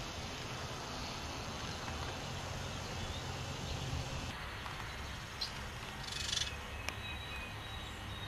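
Quiet woodland ambience: a steady low hiss and hum with a few faint high bird chirps, and a short rustle and a click about six to seven seconds in.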